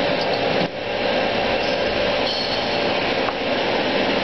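Flour-coating peanut roaster machine running: a steady, loud mechanical noise with a constant hum around 500 Hz, dipping briefly under a second in.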